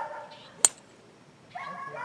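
A golf club striking the ball off the tee: a single sharp crack about two-thirds of a second in. Just before it and again near the end there is a drawn-out, high whining call.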